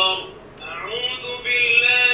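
Recorded voice chanting a Muslim prayer recitation, played through the interactive prayer mat's small speaker unit, with one long held note in the second half. A brief click about half a second in.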